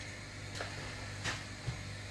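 Quiet kitchen background with a steady low hum and three faint, short taps, a utensil knocking against a saucepan of fish broth as it is stirred.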